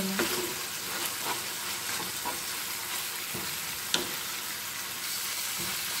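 Minced beef and onion sizzling in olive oil in a frying pan, stirred with a wooden spatula: a steady sizzle with light scrapes and a sharp click about four seconds in.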